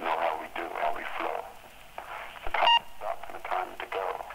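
An indistinct voice over a telephone line, thin and narrow, is broken about two-thirds of the way through by a short electronic beep, like an answering machine's beep between messages.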